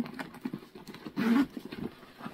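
Irregular light taps and rustles of a backpack being handled and turned over, with a brief hum of voice a little over a second in.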